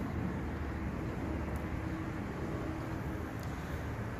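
Steady low outdoor background rumble with a faint hum through the middle; no distinct event.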